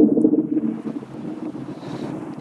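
A pause in speech filled by a soft, steady hiss of room noise.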